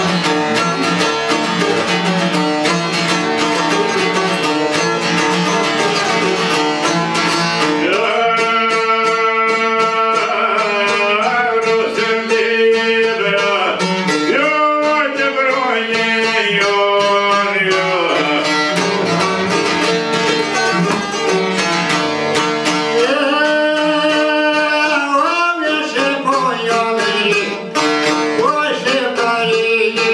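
Albanian folk music: a çifteli and a second long-necked lute plucked together in a steady, busy accompaniment. A man's voice joins about eight seconds in, singing long, bending, ornamented lines that pause and come back later.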